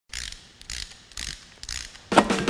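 Intro sound effect of mechanical clicking, in four short bursts about half a second apart.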